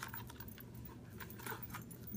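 Faint clicks and rustling of a Louis Vuitton Emilie wallet being handled as a cased phone is pushed into it.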